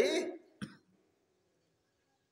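A man's voice ends a word, then he gives one short throat clear about half a second in.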